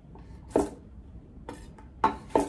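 Chef's knife chopping cucumber on a wooden cutting board: two sharp knocks of the blade through the cucumber onto the board, about a second apart, with a faint third stroke near the end.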